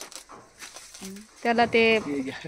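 A person's voice: a short, loud, held vocal sound near the end, after a quiet stretch of faint outdoor background.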